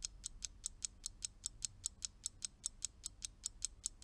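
Countdown-timer ticking sound effect: a steady run of light, high clock-like ticks, about five a second, marking the time left to answer.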